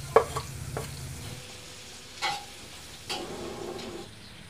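Chopped garlic, ginger and chili sizzling in melted butter in an aluminium wok. A metal spoon scrapes and taps against the wok, with a few light clicks early and two sharper ringing clinks, about two and three seconds in.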